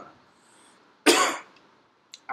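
A single short cough about a second into a pause in speech.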